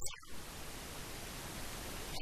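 Steady hiss of recording noise, with a short dropout right at the start.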